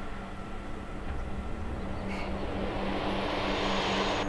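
Soundtrack drone: a low steady hum with a noise swell that builds over the last two seconds, a tension riser.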